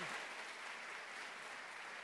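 Audience applauding in an auditorium, slowly fading.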